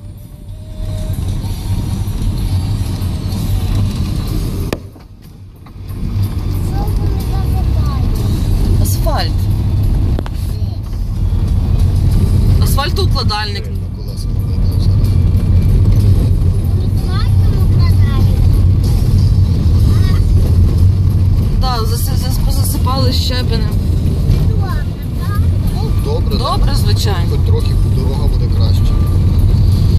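Car driving on a rough country road, heard from inside the cabin: a steady low rumble of tyres and engine, dipping briefly about five seconds in. Short bits of voices come and go over it several times.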